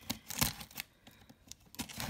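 Knife slicing through packing tape on a cardboard box: a few short scraping rips, the loudest about half a second in.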